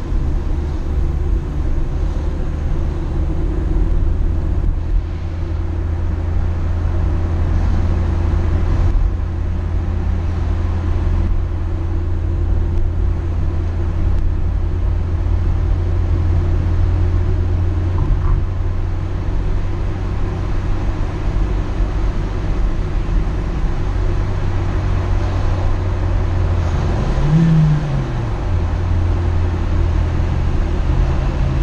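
Car engine and road noise heard from inside the cabin while driving, a steady low drone. A brief rise and fall in pitch comes about 27 seconds in.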